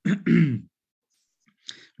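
A man clearing his throat once, a short voiced sound that falls in pitch.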